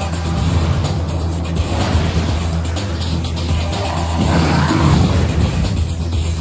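Dramatic film-trailer score over a steady low drone, with a louder rushing swell about four seconds in.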